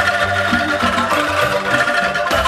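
Angklung ensemble playing: shaken bamboo angklung sounding sustained chords over a moving bass line of lower notes.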